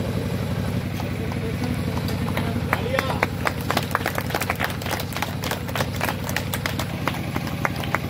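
Scattered hand claps from a small crowd, a few claps a second at an uneven pace, starting about two and a half seconds in, over a steady low engine hum.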